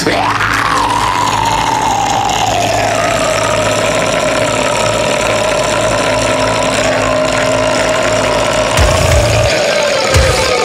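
One long held extreme-metal scream that slowly sinks in pitch throughout, over a steady low drone. Heavy low drums and bass come in near the end.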